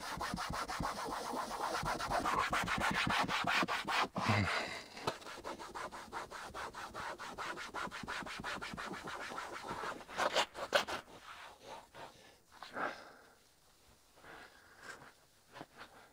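Applicator wipe in a gloved hand rubbing ceramic trim coat onto a faded, textured black plastic door panel of a John Deere XUV 865R Gator in quick, even back-and-forth strokes. The rubbing stops about eleven seconds in, leaving a few faint knocks.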